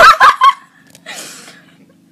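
A young woman laughing loudly in a high, warbling cackle that breaks off about half a second in, followed by a short breathy hiss around a second in.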